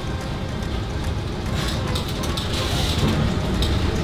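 Restaurant room noise: a steady low rumble with faint voices in the background.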